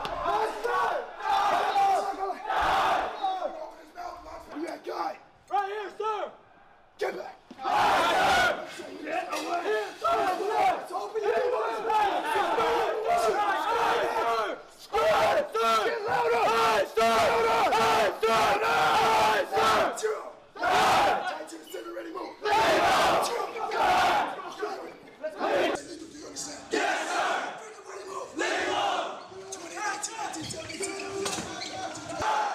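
Marine Corps drill instructors screaming commands and a group of recruits yelling back in unison at the top of their lungs, with short breaks between the bursts of shouting.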